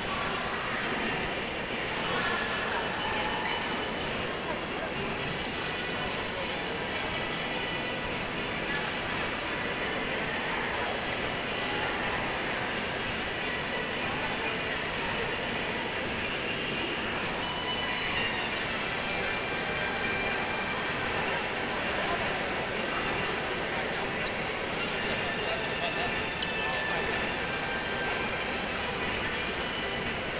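Steady background hubbub with faint, indistinct voices in a large indoor space.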